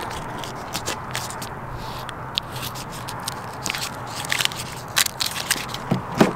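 A scraper scraping wet sticker residue off a car's side window glass: a steady rasp with scattered sharp clicks.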